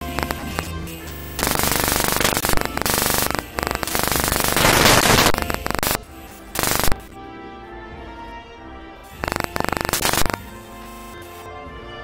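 A national anthem played as band music, broken in the first half by loud bursts of harsh, crackling noise. The tune comes through more cleanly from about seven seconds in, with one more burst of noise around nine to ten seconds.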